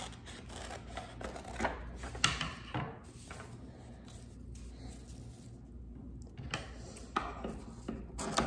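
Scissors cutting construction paper and the paper being handled: a run of short snips and rustles in the first few seconds, a quieter stretch, then a few more snips near the end.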